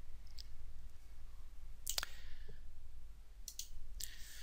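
A few sharp computer mouse clicks over a low background hum: a faint click just after the start, a louder one about two seconds in, and a quick double click near the end, as the charting software switches to a new chart layout.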